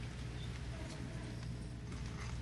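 Room tone: a steady low hum with an even faint hiss and a few faint small clicks and rustles.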